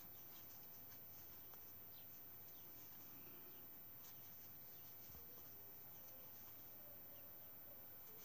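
Near silence, with faint scattered soft ticks and rustling of a metal crochet hook working wool yarn.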